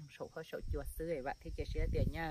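A man speaking in Hmong, with a low rumble underneath from about half a second in.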